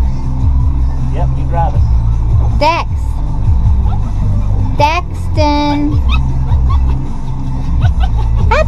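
Motorboat's engine running steadily underway, with wind and water rumble on the microphone. A few short high-pitched calls that sweep up and down come about a third of the way in and again around the middle, one held for about half a second.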